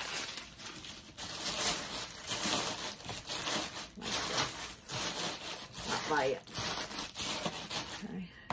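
Tissue paper rustling and crinkling as it is spread and pressed down into a cardboard box.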